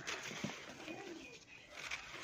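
Hands crumbling a dry chunk of moulded sand and mud, with soft crackling as it breaks and a hiss of fine powder sifting down. A pigeon coos softly in the background about a second in.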